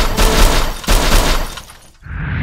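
Loud, harsh crashing noise with a heavy low rumble, several hits in the first second, then dying away.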